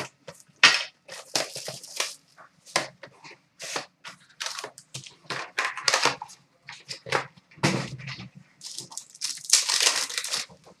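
A trading-card box being opened and its foil pack torn open: a string of irregular crinkling and tearing rustles of foil wrapper and cardboard.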